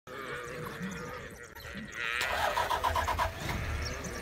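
A vehicle engine idling steadily with a low rumble. From about two seconds in, a quick run of short high-pitched calls comes over it, about five a second, lasting about a second.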